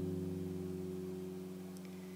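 Acoustic guitar notes ringing out and slowly dying away, a held chord fading steadily.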